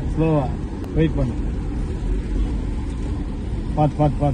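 Steady low rumble of a car's engine and tyres heard from inside the cabin while driving, with a man's voice breaking in briefly near the start and again near the end.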